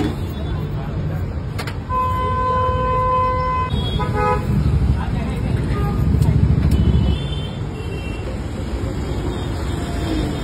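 A vehicle horn sounds one steady note for nearly two seconds, followed by a brief second honk, over the low rumble of passing street traffic.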